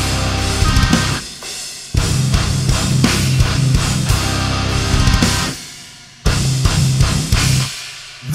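Instrumental progressive metal: distorted guitars, bass and a drum kit playing hard. Twice the band stops and lets the chord ring away, then crashes back in loud, with another stop near the end.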